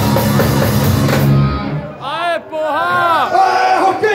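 A live rock band with drum kit and electric guitar playing loudly, then stopping abruptly about a second and a half in. A man's raised voice then comes through the PA microphone.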